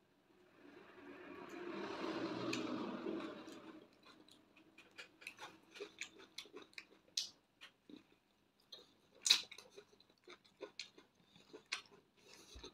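Close-miked chewing of soft bread and fried egg: a run of short, wet mouth clicks and smacks, the sharpest about nine seconds in. A soft rushing sound swells and fades in the first few seconds.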